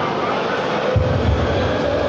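Steady background din with a low rumble of handling noise on the phone's microphone, which comes in about a second in as the phone is carried.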